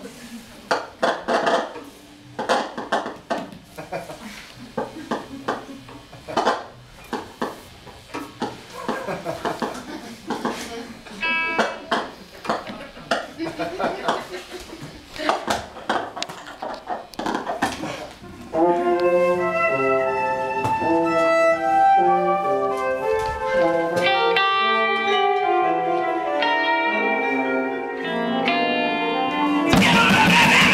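Free improvisation by a mixed ensemble of brass, strings, electric guitar, keyboard and percussion. For the first part it is sparse, scattered clicks, knocks and short tones. About eighteen seconds in, it gives way to a louder, continuous run of held pitched notes that change in steps, and the full band comes in loudly right at the end.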